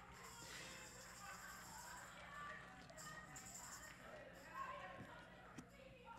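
Near silence: faint room tone with a low steady hum and a faint murmur of voices.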